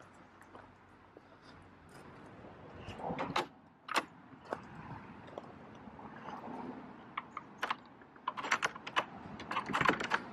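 Footsteps crunching on a gravel drive: irregular short crackly steps, coming in thicker clusters in the second half.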